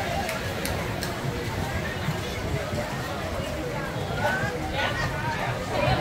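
Hubbub of many people talking at once around an outdoor bar, with a steady low rumble underneath.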